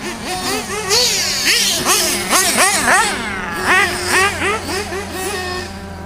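Radio-controlled cars' motors revving up and down in quick throttle bursts, several overlapping, each a short rising-then-falling whine.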